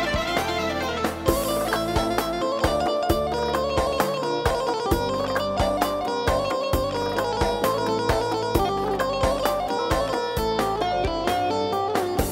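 Music with a melody over a steady beat, playing without a break.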